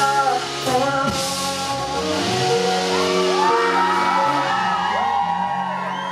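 Live band music with a male singer's voice; the drum hits stop about two seconds in, leaving held notes under sliding vocal lines.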